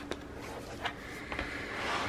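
Quiet paper handling: a few faint ticks as stickers are peeled off a sticker sheet and pressed onto a planner page, over a low steady hum.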